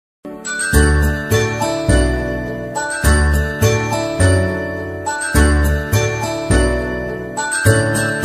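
Instrumental children's song intro: bright, chiming notes over a bass beat that lands about once a second.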